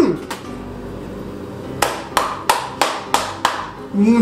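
Six sharp hand claps in the second half, evenly spaced at about three a second.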